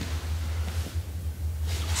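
Steady low hum with faint rustling of judo-gi cloth and bodies shifting on foam mats as one grappler presses down on the other's legs.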